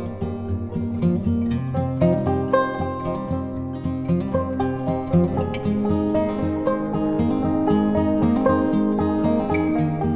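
Calm acoustic guitar music: plucked notes ringing over held low notes at an even, steady level.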